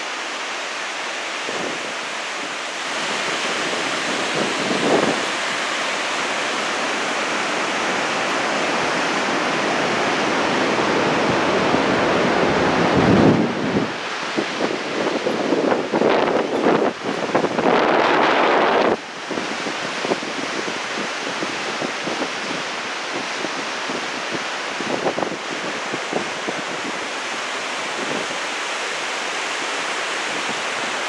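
Steady rushing of a whitewater river far below, mixed with wind blowing across the microphone. About halfway through, heavier gusts buffet the microphone for several seconds before it settles back to the steady rush.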